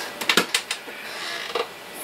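A few quick light clicks and knocks in the first second, then a brief soft rustle: handling noise as things are moved about.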